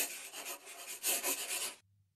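A scratchy, rasping noise that swells and fades unevenly and stops shortly before the end.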